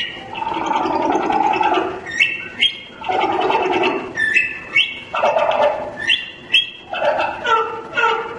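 Recorded humpback whale song played back sped up, so that it sounds more like bird song: short phrases of rising whistles over rapid pulsed calls, repeating about every one to two seconds.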